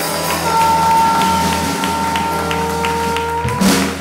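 A live band playing, with acoustic guitar and drums under one long held note and a light beat of ticks about three a second. A loud burst near the end cuts across the music.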